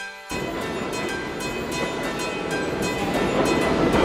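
New York City subway train passing through a station at speed: a loud, steady rumbling rush that starts suddenly about a third of a second in, with background music underneath.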